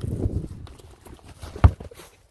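Hoofbeats of a grey horse cantering over grass turf, ending in one heavy hoof thud about one and a half seconds in as it takes off over a brush fence.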